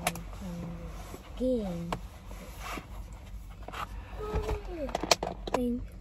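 A woman's drawn-out yawn, then several short wordless hums and sighs that bend up and down in pitch, with a few sharp clicks between them.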